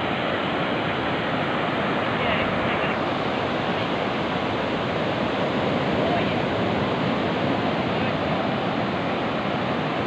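Ocean surf breaking and washing ashore in a steady, unbroken rush of noise, with some wind on the microphone.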